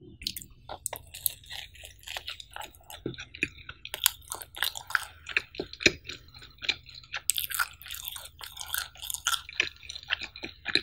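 Close-miked chewing of cheesy pizza: a dense run of small crackles and wet mouth clicks, with louder clusters around the middle and a little after.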